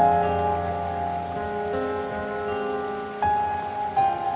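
Slow, calm solo piano music over a steady bed of soft rain. Held notes ring and fade, and a new chord is struck about three seconds in.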